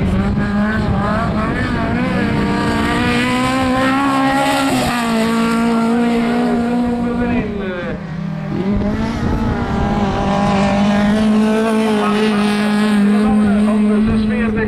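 Race car engine running hard at high revs on a dirt track. Its pitch steps down about five seconds in, then dips and climbs again around eight seconds, as the driver changes gear and lifts off the throttle.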